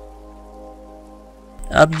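Faint steady drone of several held tones, with no change in pitch. A man's voice begins speaking near the end.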